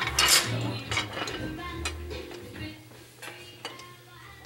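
Scattered light clinks and taps of kitchen utensils and dishes, growing fainter toward the end, with faint music underneath.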